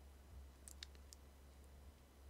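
Near silence: a faint low hum with a few small, faint clicks in the first half.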